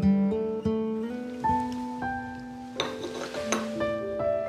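Background music: acoustic guitar picking a slow melody of held notes, with strummed chords about three seconds in.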